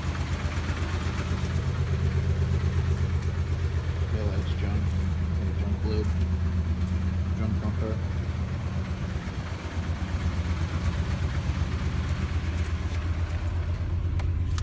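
1998 Ford F-150's 4.6-litre V8 idling steadily, with an even, rapid pulse.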